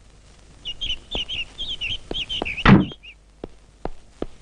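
Birds chirping in quick repeated chirps, with a single heavy thud of a Hindustan Ambassador's car door being shut a little before the end. Footsteps tap about twice a second throughout.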